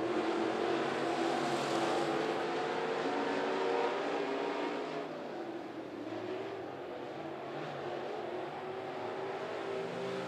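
Engines of several dirt late model race cars running hard at speed together in a pack, their tones rising and falling a little as they pass through the turns. The sound dips slightly midway.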